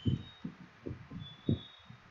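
About half a dozen soft, low thumps at irregular intervals, the loudest about one and a half seconds in.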